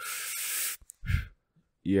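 A man makes a forceful hissing exhale, about three quarters of a second long, to imitate a weightlifter breathing out while coming up from a squat. A short voiced sound follows about a second in, and speech starts near the end.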